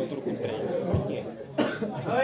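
A short cough close to the microphone about one and a half seconds in, over a low murmur of spectators' voices.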